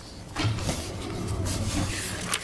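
A low steady rumble that comes up about half a second in, with light rustling and handling noises over it.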